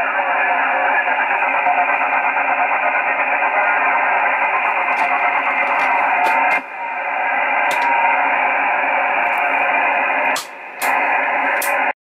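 Receiver hiss from a noisy amateur satellite transponder on a Yaesu FT-847 transceiver, with faint whistling tones drifting as the tuning knob is turned. The hiss dips briefly about six and a half seconds in and again near the end, and a few faint clicks sit over it.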